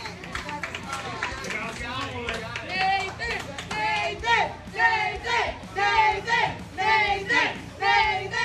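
Voices in a busy restaurant dining room, with no words close to the microphone. From about three seconds in, the voices turn louder and come in evenly spaced voiced pulses.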